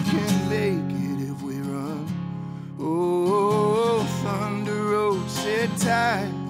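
Acoustic guitar strummed under a man's singing voice, the voice holding long notes.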